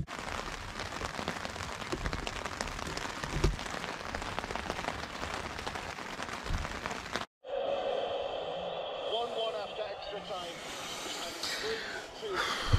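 Rain pattering steadily on a nylon tarp shelter, a dense hiss of many small drop ticks. About seven seconds in it cuts off abruptly and gives way to muffled, distant voices.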